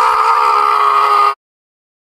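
A loud cry held on one steady pitch, cut off abruptly a little over a second in, followed by silence.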